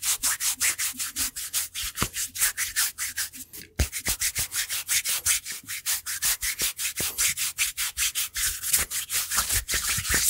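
Bare hands and forearms rubbed quickly against each other close to a microphone: a fast, even run of skin-on-skin rubbing strokes, several a second, with one brief break a little over a third of the way through.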